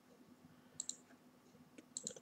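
A few computer mouse clicks in a quiet room: a pair just under a second in and another couple near the end.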